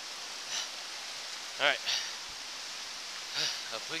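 Steady rushing of a creek, heard as an even hiss under a few spoken words.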